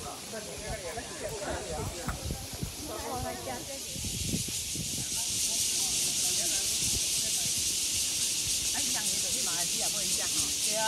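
A chorus of cicadas in the trees: a steady, high-pitched hiss that grows louder about five seconds in.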